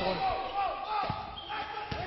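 Basketball dribbled on a hardwood court: three single bounces about a second apart, a slow walking dribble.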